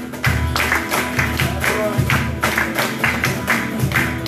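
A group clapping hands in a steady rhythm over strummed acoustic guitar, live accompaniment for a dancer.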